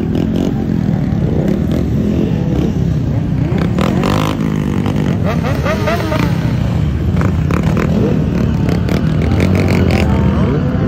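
Many sport motorcycle engines running together in a crowd of bikes, idling and being revved, their overlapping revs rising and falling. The revving is busiest around the middle.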